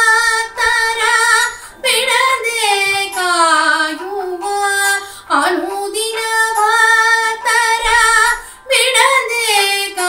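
A woman singing a devotional song solo, in long drawn-out, ornamented phrases with quick breaths between them, about two, five and nine seconds in.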